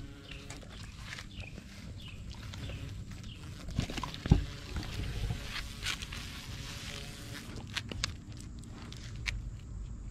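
Basset hounds sniffing and snuffling at the ground, with short noisy sniffs and clicks and a single thump about four seconds in.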